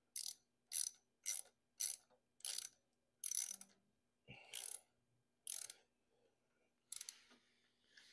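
A ratcheting hand tool worked in short strokes: about six quick bursts of clicking roughly half a second apart, a single knock about four seconds in, then a few more ratchet strokes.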